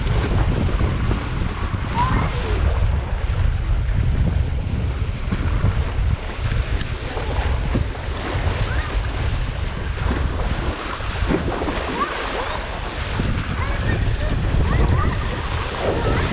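Wind noise on the microphone over water rushing and splashing along a windsurf board's hull as it sails fast through the chop, steady throughout.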